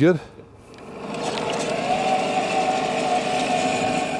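Cannon electric downrigger motor running, lowering the ball weight on its cable into the water. A steady motor whine that starts about half a second in, builds over the next second and then holds level.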